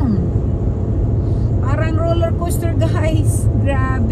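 Steady low road and engine rumble inside a car cruising on a highway, with voices talking in the cabin through the second half.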